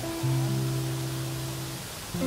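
Acoustic guitar played solo: a low bass note and a higher note are plucked about a quarter second in and ring for about a second and a half, fading near the end.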